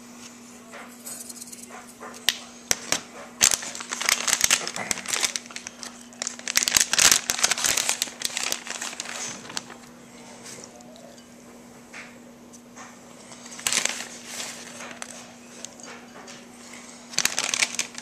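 Plastic bag of shredded cheese crinkling in several irregular bursts as handfuls are pulled out and sprinkled over a bowl of beaten eggs. A faint steady hum runs underneath.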